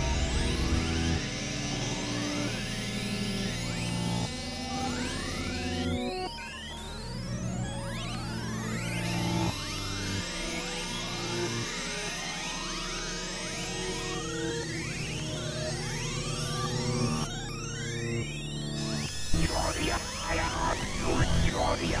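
Experimental electronic synthesizer music: many quick rising pitch sweeps over low held drone tones that shift pitch every second or two. Near the end it turns into a denser, crackling texture.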